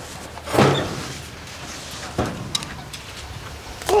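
Rabbit hutch door being opened: a short scrape about half a second in, then a lighter knock.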